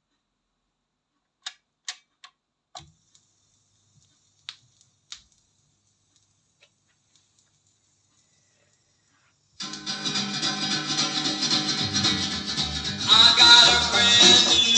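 A handful of sharp, scattered clicks, then about ten seconds in music with guitar starts playing from a vinyl LP on a Dual 1019 record changer. It gets louder about a second before the end.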